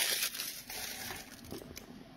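Plastic wrapper of a Magic: The Gathering booster pack crinkling as it is handled and the cards are taken out, with a few sharper crackles. It is loudest at the start and fades.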